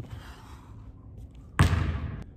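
A basketball bouncing once on a hardwood gym floor near the end: a single sudden thud that dies away briefly.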